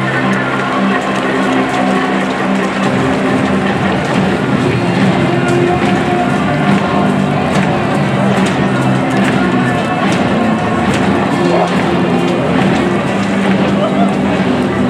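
Music playing over a ballpark's public-address system, with crowd noise underneath.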